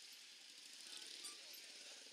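Near silence: the sound track has dropped out, leaving only very faint traces of sound.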